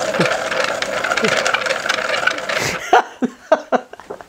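A hand-cranked continuously variable transmission, made from dog-toy balls and a ring in a plastic frame, running with a steady whirring rattle of fine clicks. It stops abruptly a little under three seconds in, and a man's laughter follows.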